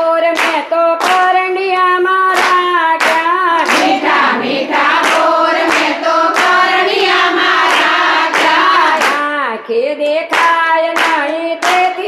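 A group of women singing a Gujarati devotional kirtan in unison, keeping time with steady hand clapping about twice a second.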